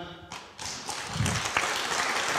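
Audience applause, many hands clapping, starting about half a second in and growing louder.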